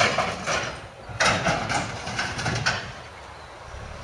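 Scrap-processing machinery crunching and clanking scrap metal, with an irregular louder run of metal clatter between about one and three seconds in.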